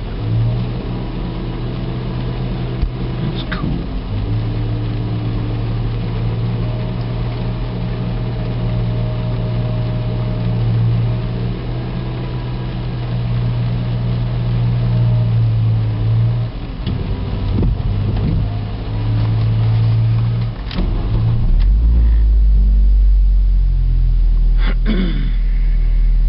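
Vehicle engine running, heard from inside a car's cabin as a steady low hum that drops out and returns a few times. A deeper rumble comes in near the end as the sound grows louder.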